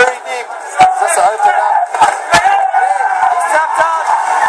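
MMA commentators shouting excitedly over a cheering arena crowd as a fight ends by choke submission, heard through computer speakers and picked up by a phone. A few sharp knocks cut through, the loudest about a second in.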